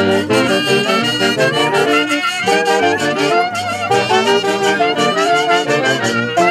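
A band of saxophones and brass playing a dance tune, its melody moving in quick notes without a break.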